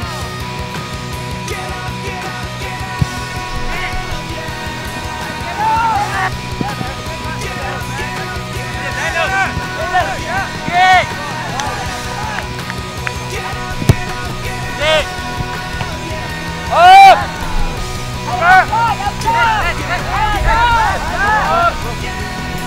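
Background music: a rock track with a singing voice whose pitch rises and falls over steady held chords. It is loudest about three-quarters of the way through.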